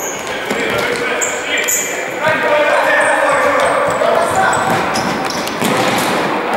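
Indoor futsal play in a reverberant sports hall: the ball being struck and shoes squeaking on the court floor, with players shouting to each other, the shouting louder from about two seconds in.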